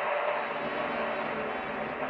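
Old-time radio static: a steady hiss with faint held tones beneath it, thin and without any treble.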